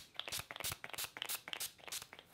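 NYX Marshmallow setting spray pump bottle misting the face in a quick run of short, soft spritzes, several a second.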